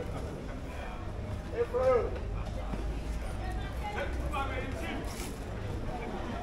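Open-air market ambience: voices talking at a little distance, one short stretch about two seconds in and another near four seconds, over a steady low rumble.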